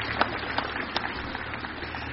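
Scattered audience applause, individual claps thinning out and dying away.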